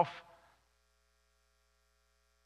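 The tail of a man's spoken word dies away in room reverberation, then near silence with only a faint, steady low electrical hum.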